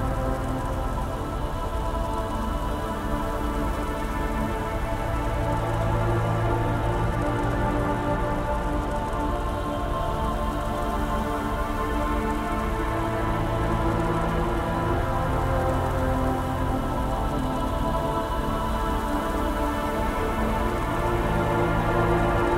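Dark ambient music: slow, sustained synth drones holding a chord that swells in the bass now and then, layered over a steady hiss of industrial ambience noise.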